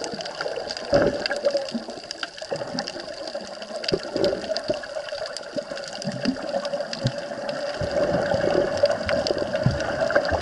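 Underwater sound picked up by an action camera in its waterproof housing: an irregular wash of moving water against the housing, with scattered short clicks, growing somewhat louder near the end.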